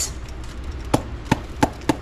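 Four short, sharp knocks, about one every third of a second in the second half, as a hollowed-out green bell pepper is handled over a sink to clear out its seeds.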